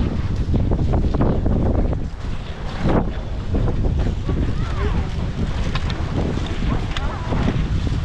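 Wind buffeting the microphone of a camera carried by a skier on the move, with the hiss and scrape of skis on packed snow.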